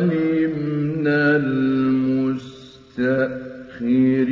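Male voice reciting the Quran in the melodic mujawwad style, drawing out long, ornamented held notes. It breaks off briefly a little past halfway for a pause, then resumes.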